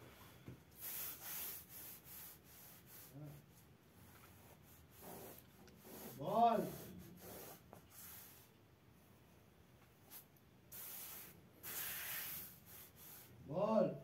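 Pencil strokes on paper on a drawing board: a soft scratching rub in several short spells. A voice gives two brief hums, one about midway and one near the end.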